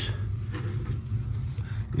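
Steady low hum, with a brief faint murmur of a voice about half a second in.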